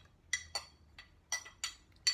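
Metal utensils clinking against a clear glass salad bowl: about half a dozen light, irregular clinks as tomato pieces are set around the edge.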